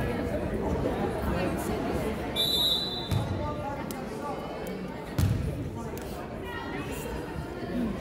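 A basketball bouncing on a hardwood gym floor, two thuds about three and five seconds in, over steady crowd chatter echoing in the gym. A short, high whistle blast sounds about two and a half seconds in.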